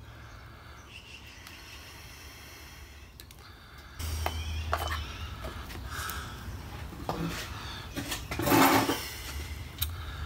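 Quiet room tone for the first few seconds, then handling of small metal distributor parts and tools on a wooden table: scattered light clicks and knocks, with a louder, rustling clatter about a second and a half before the end.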